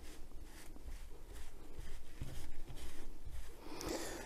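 Wet baby wipe dabbed and rubbed over paper stuck to a diamond painting canvas's glue, soaking the paper to loosen it. A faint rustling comes in soft strokes about three times a second.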